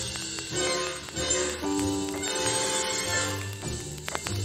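A jazz band playing an instrumental passage, with held notes over a steady bass line and no singing.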